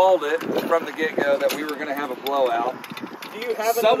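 People talking over a steady background noise.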